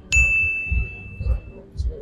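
A single bright bell-like ding that rings steadily for about a second and a half, a sound effect marking a correct answer.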